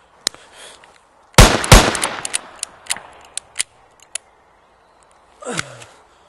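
Two revolver shots fired in quick succession, about a third of a second apart, preceded by a small click. A trail of sharp, thinning clicks and cracks follows them over the next two seconds. Near the end comes a man's short groan sliding down in pitch.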